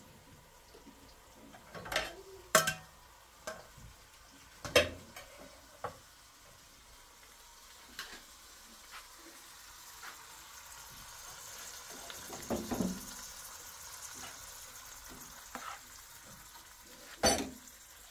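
Kitchen cookware clatter: a steel pot, frying pan, bowl and spoon knock and scrape, with several sharp clanks, the last near the end. A soft sizzle of food frying on the gas stove builds in the middle.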